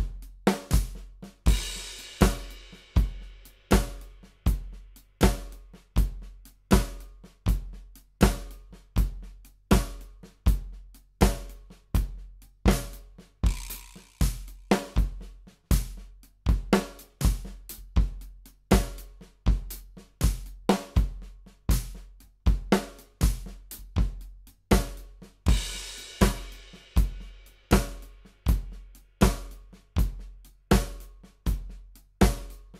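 Drum kit played in a triplet paradiddle groove at about 80 beats a minute: bass drum on every beat with quick triplet stick strokes on drums and cymbals between. A cymbal crash comes about every twelve seconds, three times.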